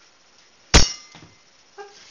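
A candelabra crashing: one sudden loud crash with a ringing, clinking clatter about three quarters of a second in, followed by a smaller knock.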